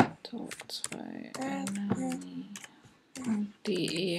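Typing on a computer keyboard: an uneven run of sharp key clicks as text is entered.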